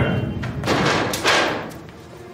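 Two loud, noisy thumps about two-thirds of a second apart, each trailing off in a rushing noise.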